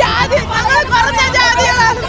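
A woman shouting in a high, strained voice over the babble of a crowd.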